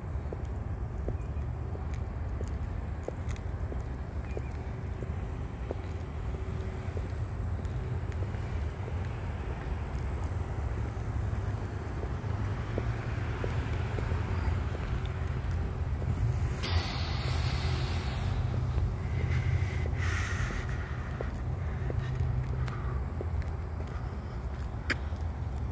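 Outdoor ambience: a steady low rumble of road traffic, with two short hissing noises a little over two-thirds of the way through.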